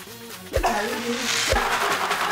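A brown paper bag with chicken inside being shaken hard: a loud papery rustle that starts about half a second in, over background music.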